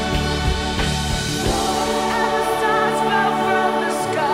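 Live band music with a choir singing. The beat drops out about a second and a half in, leaving held chords under the wavering choir voices.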